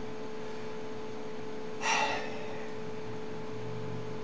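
A single short, sharp breath or gasp from a man about halfway through, over a steady room hum with a faint constant tone.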